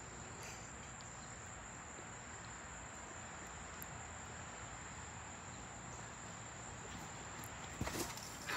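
A steady, high-pitched insect chorus, typical of crickets, with a thump near the end as a jumper lands on the trampoline mat.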